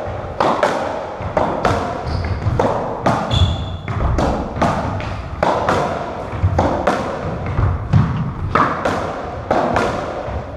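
Racketball rally on a squash court: a quick run of sharp hits, more than one a second, as the rubber ball is struck by strung rackets and smacks off the walls and wooden floor, each hit echoing in the enclosed court.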